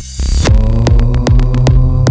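Psytrance track: a short break filled by a rising white-noise swell, then the four-on-the-floor kick drum and rolling bassline drop back in about half a second in, under a held, humming synth drone.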